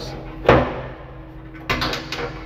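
A sharp metallic clack with a short ringing tail about half a second in, as the hinged sheet-metal cover of an electrical distribution board is shut, then a second knock near the end.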